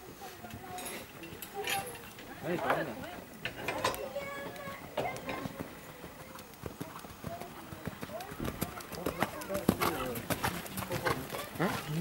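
Indistinct voices talking, with a horse's hoofbeats as it trots on the sand arena: short thuds that come thicker and faster in the second half.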